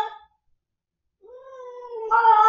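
Ragdoll cat yowling: one long, drawn-out yowl trails off just after the start, and after about a second of silence another begins and swells. These are the night-time distress yowls of a cat unsettled by a move to a new home.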